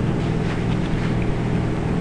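Steady low hum with an even hiss over it.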